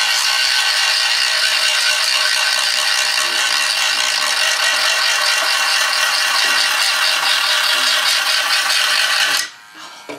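Dremel rotary tool with a cutting disc running at high speed, grinding through a fiberglass animatronic face shell: a steady high whine over gritty grinding noise that cuts off suddenly near the end.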